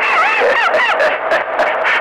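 A transmission heard over a CB radio: a run of high-pitched calls without words, rising and falling in pitch about four times a second.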